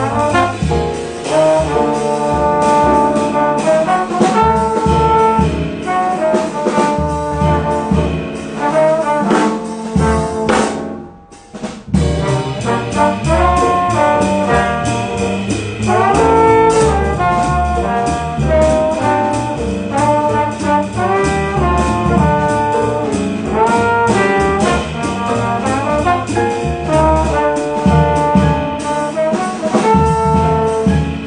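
Live jazz quintet: two trombones playing the melody together over piano, upright double bass and drum kit. The band drops out briefly about eleven seconds in, then comes straight back in.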